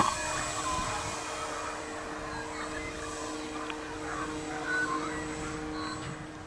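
Engine of a quarter-scale Tiger Moth RC model biplane in flight: a steady drone that slowly fades as the plane flies away. A brief sharp click comes right at the start.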